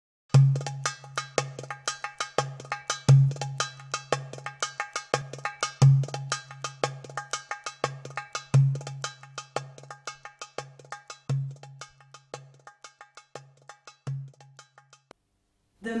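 Oriental percussion rhythm on a goblet drum (tabla): a deep stroke about every 2.7 seconds with quick, sharp high strokes between, and a metallic ringing on the strikes from finger cymbals (sagats). The rhythm fades and stops about a second before the end.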